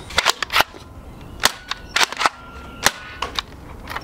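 Nerf Elite 2.0 Technician pump-action foam dart blaster being primed and fired: sharp plastic clacks and pops, a quick cluster in the first second and then several more spaced out.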